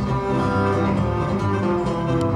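Live instrumental music from an electric bass guitar and a harmonica: the harmonica holds sustained notes over a plucked bass line.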